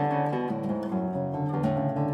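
Classical guitar playing a piece of plucked notes and chords, with low bass notes left ringing under the melody.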